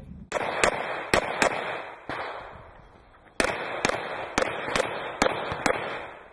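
A string of about eleven pistol shots, mostly fired in quick pairs with a pause of about a second in the middle, each followed by a short echo.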